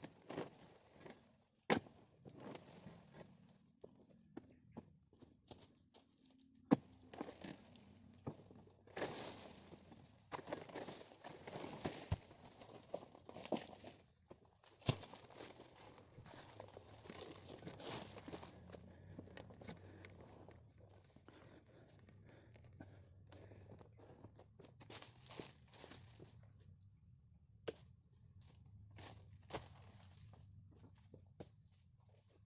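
Footsteps and rustling in dry fallen oil palm fronds and undergrowth, with irregular sharp cracks and knocks scattered through, busiest in the first half. A faint low hum sits underneath in the second half.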